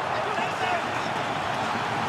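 Football match broadcast ambience: a steady hiss of stadium background noise, with faint distant voices about half a second in.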